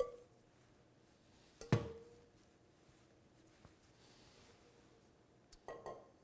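Stainless steel mixing bowl and metal sheet pan clinking while tomato slices are laid out: a light knock with a short ring at the start, a louder ringing knock just under two seconds in, and a few faint taps near the end.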